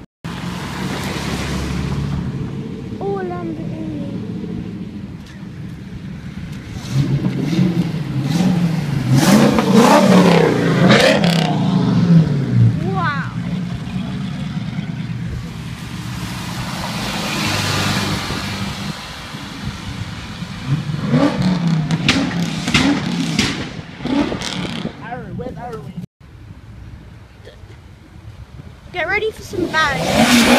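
Sports car engines accelerating past in several passes, revving up and falling away, loudest about ten seconds in.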